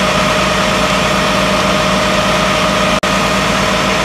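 Fire engine running steadily at the fire ground, driving its water pump: a constant loud drone with a steady hum, cutting out for an instant about three seconds in.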